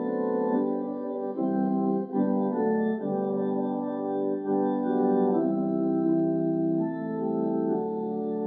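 Church organ playing a hymn in sustained chords, the chords changing about once a second.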